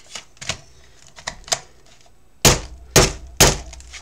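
Plastic craft circle punch pushed down hard by hand: a few light clicks, then three loud thunks about half a second apart. The punch is struggling to cut through an index card stiffened with washi tape, and the crafter says it is dull.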